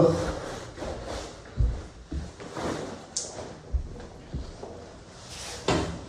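Wet waterproof rain trousers rustling and swishing as they are pulled off over the feet, with a couple of dull thumps of feet landing on a wooden floor.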